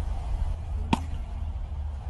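Steady low rumble of wind buffeting an outdoor phone microphone, with one sharp click about halfway through.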